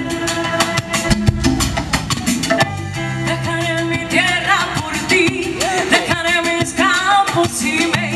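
Live Latin dance band playing: a singer's voice over a steady beat of congas and timbales with keyboard, the singing most prominent in the middle of the stretch.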